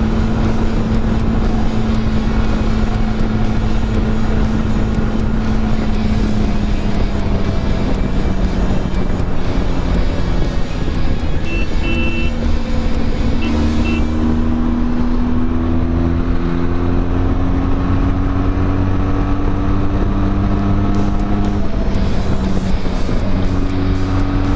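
Benelli TRK 502X parallel-twin engine running at highway speed under heavy wind noise. The engine note eases off slightly, then climbs steadily through the second half as the bike speeds up.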